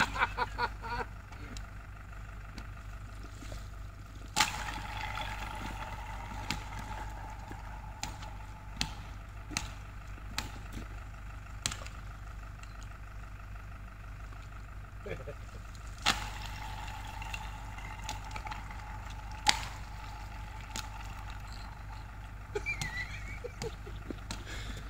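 Wind buffeting the microphone in a low, steady rumble. About a dozen sharp clicks and knocks are scattered through it, the loudest about three-quarters of the way through.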